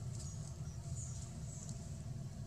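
Several short, high-pitched chirps or squeaks, the clearest about a second in, over a steady low rumble.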